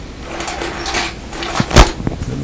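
Rustling and clatter of things being rummaged through on the floor, with a few light knocks and one sharp knock near the end, the loudest moment.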